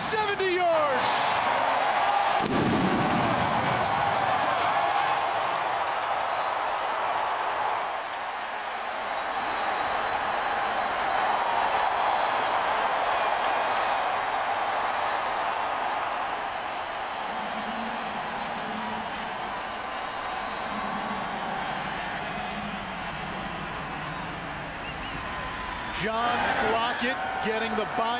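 Large home stadium crowd cheering loudly after a touchdown, a steady wall of voices that eases off a little after about eight seconds.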